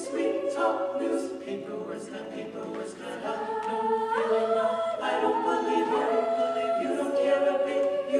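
Mixed-voice a cappella group of men and women singing held chords in close harmony, the chord shifting every second or two.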